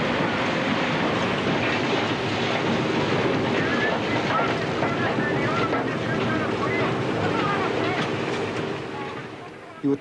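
Steady, dense din of underground coal-mining machinery at work, with indistinct voices faintly in it; it fades down shortly before the end.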